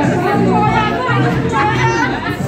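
Background music with steady low notes under several people chattering in a large room.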